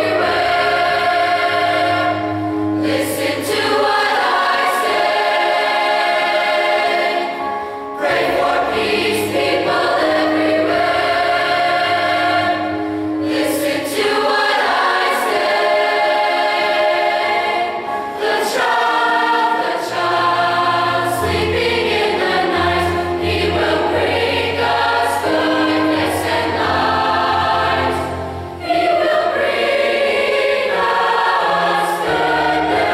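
Large mixed choir of young men's and women's voices singing a slow piece in several parts, in long held phrases with brief breaks between them.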